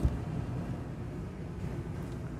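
A single short knock as a lift-up overhead cabinet door reaches its open position, followed by a steady low background rumble.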